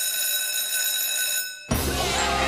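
Electric school bell ringing steadily for nearly two seconds, signalling recess, then cutting off as upbeat theme music starts.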